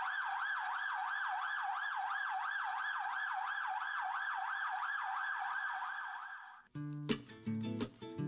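Ambulance siren in fast yelp mode, its pitch sweeping up and down about three times a second, fading out near the end. Guitar music starts just after it.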